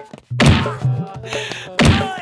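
Dubbed film-fight punch sound effects: two heavy hits about a second and a half apart.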